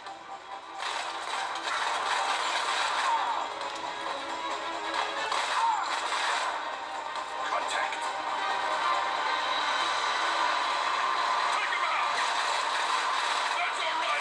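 Mobile first-person shooter game audio played through a phone's small speaker: game music with gunfire and combat sounds, thin with almost no bass.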